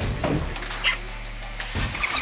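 Fire blanket's fabric rustling as it is lifted off a training dummy, with a thump near the end.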